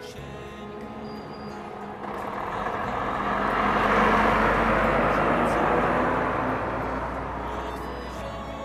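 Volvo FH lorry with a curtain-side semi-trailer driving past: engine rumble and tyre noise swell from about two seconds in, are loudest around the middle, then fade as it moves away. Soft music plays underneath.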